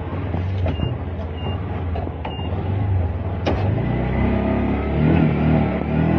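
Auto-rickshaw engine running with street traffic, a steady low hum that grows louder in the second half, with a few short high beeps early on.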